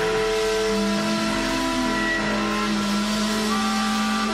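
Live blues-rock band with a harmonica played into a distorted vocal microphone, holding long buzzy notes; a new held note starts about a second in and runs on.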